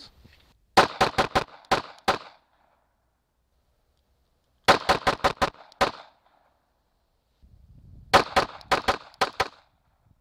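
Glock 42 subcompact pistol in .380 ACP fired in three quick strings of about six sharp shots each, a few seconds apart.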